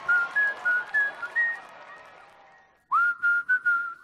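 Whistled tune: a run of short notes stepping up and down that fades away, then a new phrase starting with a quick upward slide about three seconds in, with faint clicks over the held notes.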